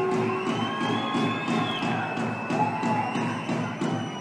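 Audience applause with some cheering, dying down toward the end, over soft background music.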